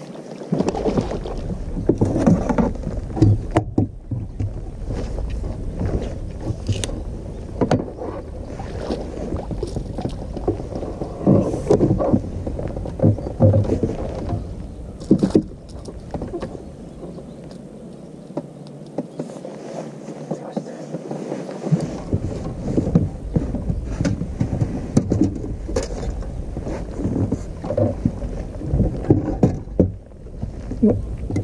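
Knocks and clatter on a bass boat's deck and water noise while a black bass is played, netted and lifted aboard, over a steady low rumble.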